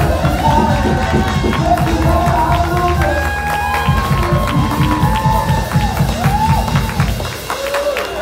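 A live worship band playing: several voices singing over a steady beat and bass.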